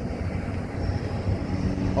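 Wind buffeting the phone's microphone outdoors, a steady low rumble.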